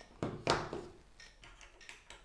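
Two short sharp clicks about a third of a second apart, then a few faint knocks: a phone being handled out of a plastic car phone mount's grip arms and set down on a cutting mat.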